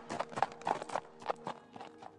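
Horse galloping away: a sound effect of rhythmic hoofbeats, about three a second, fading out over the last second.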